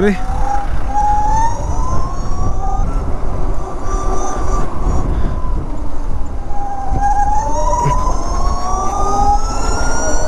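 Electric scooter motor whining, rising in pitch twice as the scooter accelerates uphill, over heavy rumble of riding wind on the microphone.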